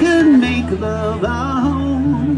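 Live band music: a male voice singing a wavering, drawn-out melody line over electric guitar chords and a steady bass.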